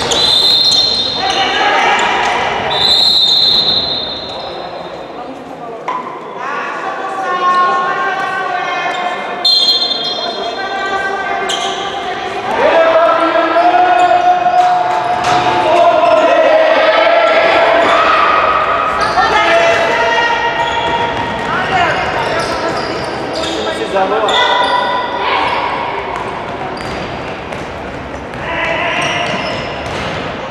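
A handball bouncing on a sports-hall floor amid shouting from players and spectators, all echoing in the large hall.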